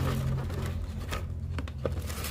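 Cardboard box flaps and mooncake wrappers being handled: light rustling with a few short, sharp crinkles and scrapes.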